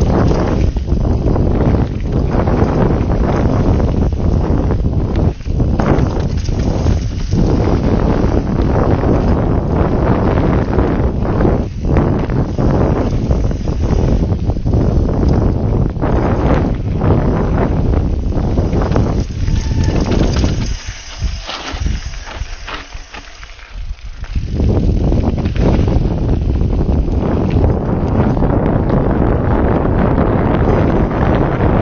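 Mountain bike riding fast down a dirt and gravel trail: wind buffeting the camera microphone over the rumble of the tyres, with frequent knocks and rattles from the bike over bumps. The noise drops away for a few seconds about two-thirds of the way through, then returns.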